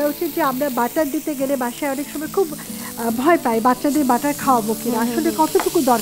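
Chicken frying in butter in a pan on the stove, a steady sizzle, with several people talking over it.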